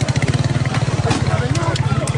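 A motorcycle engine idling close by: a rapid, even low pulsing.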